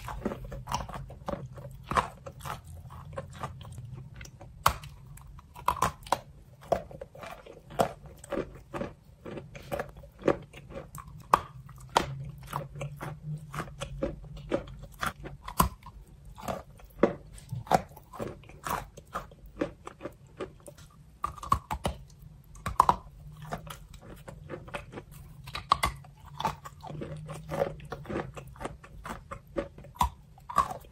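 Close-miked biting and chewing of a wet block of chalk: dense, irregular crunches and crackles with soft wet mouth sounds, over a steady low hum.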